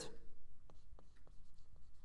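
Marker writing on a whiteboard: a run of short, faint strokes and ticks as the tip moves over the board.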